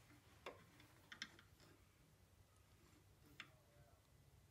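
Near silence with a few faint clicks: metal calipers ticking against a small wooden bowl as its wall thickness is gauged. One click about half a second in, a quick pair just after a second, and one near the end.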